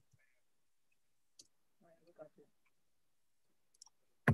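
Near silence with a few faint clicks and a brief faint voice.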